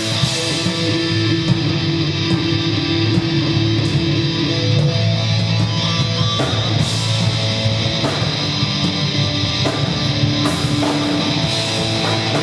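Live instrumental rock from a small band: electric guitars and bass playing sustained chords over a drum kit, with cymbal hits cutting through at intervals.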